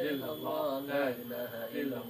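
A man's voice chanting an Arabic prayer in a melodic recitation, with long, held notes.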